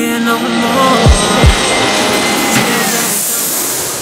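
Background music with a steady beat, with a loud rushing noise that swells through the second half: a jet plane passing low overhead.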